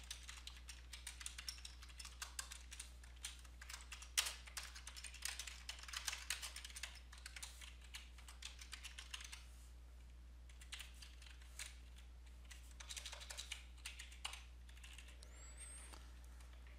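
Faint typing on a computer keyboard: runs of quick keystrokes with short pauses, thinning out in the last few seconds.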